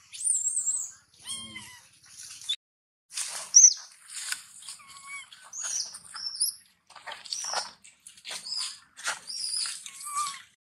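Baby macaque giving repeated short, high-pitched squeals and chirps, about a dozen calls in irregular series.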